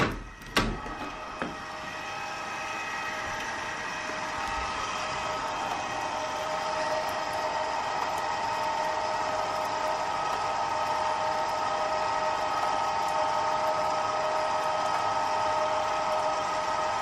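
A couple of sharp clicks, then a steady machine-like hum made of several even tones that grows slowly louder.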